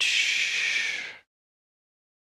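Breath close to the microphone: one airy breath of about a second that cuts off suddenly, just after two short sniffs.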